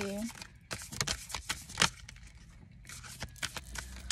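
A deck of oracle cards being shuffled by hand: a quick, irregular run of sharp card flicks and snaps, easing off for a moment in the middle.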